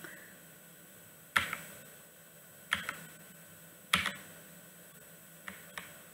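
Three sharp clicks about a second and a half apart, then two faint ones near the end, from a computer being operated close to the microphone as the slide presentation is advanced.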